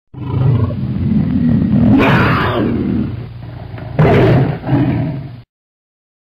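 A big-cat roar sound effect, rising to two louder surges about two and four seconds in, then cutting off suddenly before the end.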